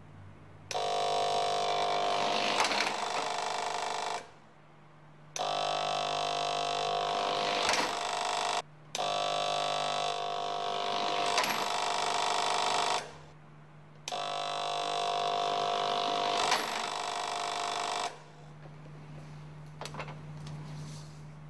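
Ticker-tape timer buzzing in four separate stretches of about three to four seconds each, marking the tape as a trolley runs down a track, with a short knock partway through each stretch. A faint steady hum lies underneath.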